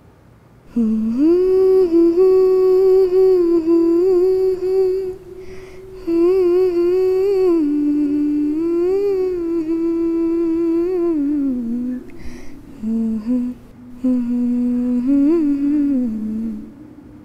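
A woman humming a slow, wordless tune in long held notes, pausing briefly about five seconds in and again around twelve seconds.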